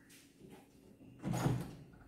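Front door's metal lever handle and latch being worked to open the door, with one loud clunk about a second and a half in.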